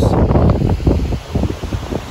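Wind buffeting a phone's microphone, a loud rumbling noise that rises and falls in gusts, with a short lull a little past the middle.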